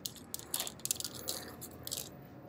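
Hard plastic flying toys (discs and boomerangs) clicking and scraping against each other and the concrete as a hand rummages through the pile, in irregular clicks throughout.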